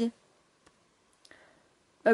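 A woman's word trails off, then two faint, light clicks come, about half a second and a little over a second in.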